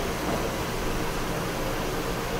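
Steady background hiss of the recording, like fan or microphone noise, with no other distinct sound.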